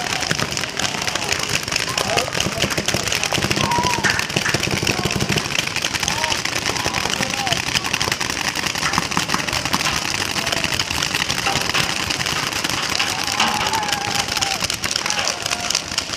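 Many paintball markers firing at once across the field: a dense, unbroken crackle of shots, with voices mixed in.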